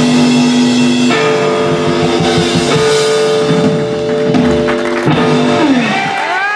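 Live electric blues-rock trio playing: electric guitar holding long, ringing notes over bass and drums. Just before the end, a note slides down in pitch.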